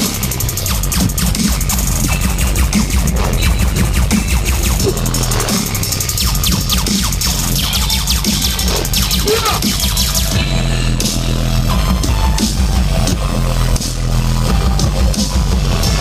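Dubstep DJ set playing loud over a concert sound system, with heavy bass throughout. The treble drops out for about a second roughly ten seconds in.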